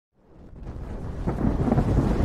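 A deep rumble swelling up out of silence, with some crackling about a second and a half in: the thunder-like boom of an animated fire-and-smoke intro sound effect.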